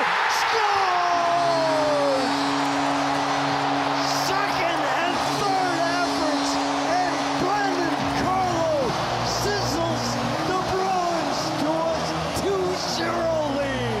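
Hockey arena crowd cheering a home goal, full of yells and whistles. The arena's goal horn holds a steady low blast from about a second in to about eight seconds, and goal music takes over after that.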